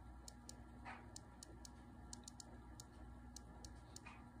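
Faint, light clicks, about a dozen at an uneven pace, from fingers tapping out text on an iPod touch's touchscreen keyboard.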